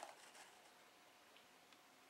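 Near silence: room tone, with a few faint handling sounds in the first half second.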